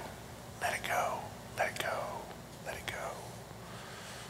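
A man whispering three short phrases about a second apart, softly and hissily, over a faint steady room hum.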